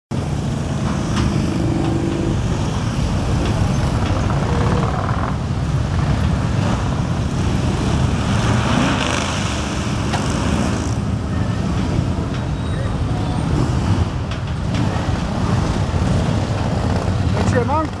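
Harley-Davidson V-twin motorcycles rumbling steadily as they ride past at low speed, with the mixed noise of crowd voices, and a voice near the end.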